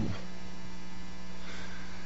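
Steady electrical mains hum on the recording: a low tone with many faint, evenly spaced overtones above it, heard while the voice is silent.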